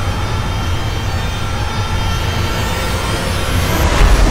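Dramatic sound-effect score: a deep, steady rumble under held musical tones, with a rising whoosh building up near the end.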